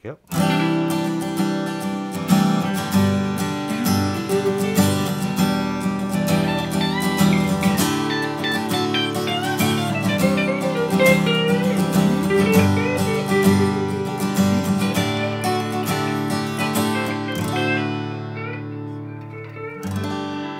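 Steel-string acoustic guitar strummed with a Dava Control nylon pick held far back from its tip, so the pick flexes and gives a light attack close to that of a thin pick. It is a continuous run of strummed chords that dies away near the end.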